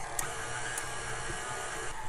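KitchenAid stand mixer running steadily, its dough hook kneading a ball of bread dough in the stainless steel bowl.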